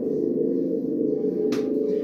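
Metal singing bowls ringing together in a sustained, layered drone, with one sharp click about one and a half seconds in.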